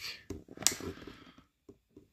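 Cardboard packaging being handled: light rustling and small clicks from the calendar's opened door, with one sharper click about two-thirds of a second in, stopping about a second and a half in.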